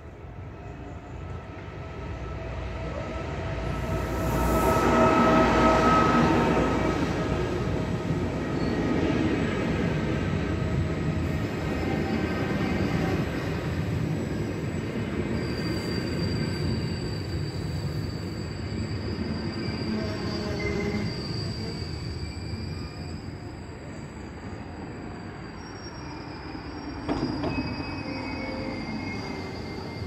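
Double-deck regional electric train passing over a level crossing. It builds to its loudest about five seconds in, rolls past steadily, then eases off, with one sharp knock near the end.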